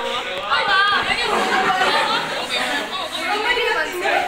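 Speech: a woman talking in an animated way, with other voices chattering in a large, echoing room.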